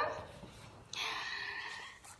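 A woman's long, drawn-out sung word fading out, followed about a second in by a faint, brief hiss.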